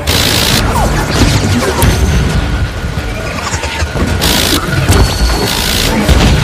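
Phalanx CIWS 20 mm rotary cannon firing in three short bursts, one at the start and two near the end, over booms and rumbling explosions.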